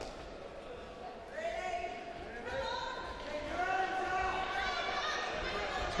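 Voices shouting from ringside, drawn-out calls that start about a second and a half in and grow louder toward the end, over dull thumps from the boxing ring.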